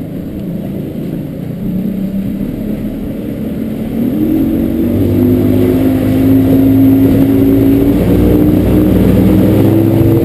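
Evinrude 135 H.O. E-TEC two-stroke outboard accelerating under throttle. Its note climbs and gets louder about four seconds in as the boat comes up to speed, then holds steady.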